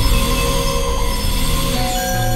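Experimental synthesizer drone music: many sustained tones held together from low to high over a noisy hiss, with the low notes shifting. Near the end one middle tone stops and a slightly higher one takes over.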